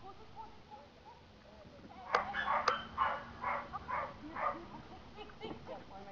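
A dog barking in a quick series of about seven barks, starting about two seconds in, with a few fainter sounds after.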